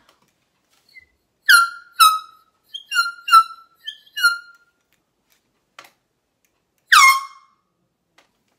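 Handheld canned air horn sounded in a string of about seven short toots, each sliding slightly down in pitch, then one longer blast near the end.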